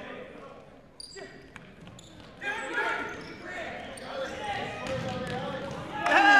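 Futsal ball being played on a gymnasium's hardwood floor, with a few short knocks of the ball. Players and spectators call out in the echoing hall, the voices growing louder from about halfway through.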